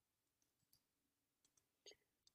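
Near silence: a pause between narrated sentences, with one faint short click near the end.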